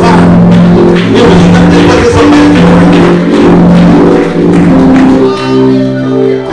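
Church keyboard playing a slow hymn in sustained, held chords that change in slow steps.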